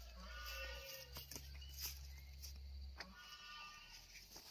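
Faint, drawn-out animal calls, with a few sharp snaps from pumpkin flowers and vines being picked by hand.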